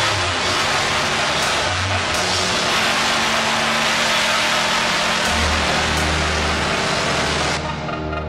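Industrial electronic music: a dense wall of distorted noise over low sustained bass notes. The noise cuts off sharply near the end, leaving the bass and synth lines.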